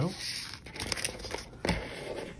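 Trading-card booster packs' foil wrappers crinkling as they are picked up and handled, with one sharper knock about three-quarters of the way through.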